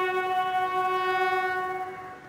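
A bugle call holds one long note, rich in overtones, which fades away near the end. It is a ceremonial tribute sounded while the salute is given at the war memorial.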